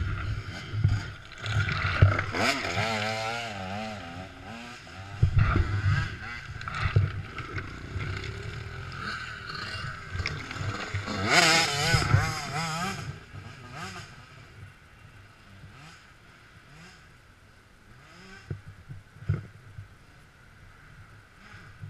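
Off-road dirt bike engine revving in uneven surges, its pitch wavering up and down, with knocks and scrapes on a rocky trail climb. After about fourteen seconds it drops to a much lower level, with a few sharp clicks near the end.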